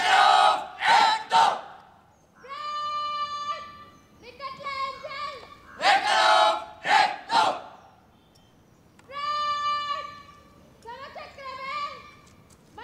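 NCC drill commands shouted across a parade ground: long, held calls at a steady pitch, and twice a cluster of short, very loud sharp shouts.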